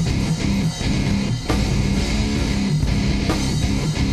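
Studio recording of a hardcore band playing an instrumental passage: distorted electric guitars and bass over a drum kit, with no vocals.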